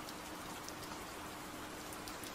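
Steady rain, an even hiss of falling rain, with a faint steady hum underneath.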